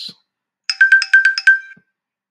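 A short electronic chime: a rapid run of about half a dozen bright, clear notes starting under a second in and lasting about a second, like a ringtone. It is a slide-transition sound effect.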